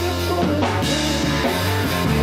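Funk band playing: drum kit, a bass line and electric guitar.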